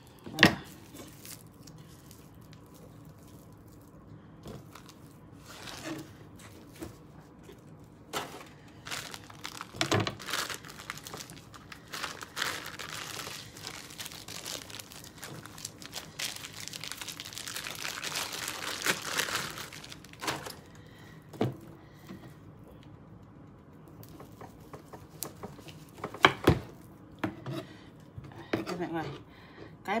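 Plastic bag wrapping crinkling and tearing as it is peeled off a pressed roll of pork head cheese, densest through the middle of the stretch. A few sharp knocks of a knife and the roll on a plastic cutting board, the loudest right at the start.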